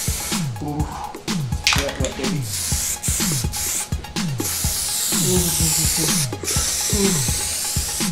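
Aerosol spray-paint can hissing in spurts with brief breaks, spraying gloss black paint, over background music with deep sliding bass notes.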